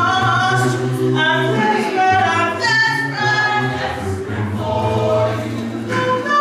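A mixed gospel choir singing a cappella in harmony, with no instruments, and a low bass line holding long notes beneath the upper voices.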